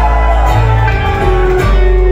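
Live country band playing an instrumental stretch with no singing: strummed acoustic guitar with electric guitar over a heavy low end and regular drum hits.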